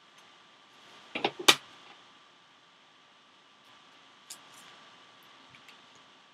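Trading cards and plastic card holders handled on a tabletop: a quick cluster of sharp plastic clicks and taps about a second and a half in, one fainter click past four seconds, and a quiet room in between.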